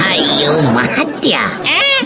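Cat-like wailing cries that glide up and down in pitch, one rising at the start and another near the end.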